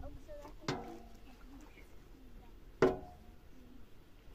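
Two metallic clanks about two seconds apart, the second louder, each ringing briefly as metal cookware is handled and set down.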